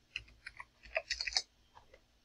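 Computer keyboard keys clicking in a quick run of keystrokes as a number is typed into a box, stopping about a second and a half in.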